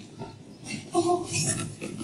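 A woman's short, rough vocal noises, not words. Several come in quick succession over the second second.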